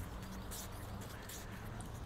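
Water running out of the end of a flexible hose onto paving as a siphon from the pond starts flowing: a faint, steady splashing trickle.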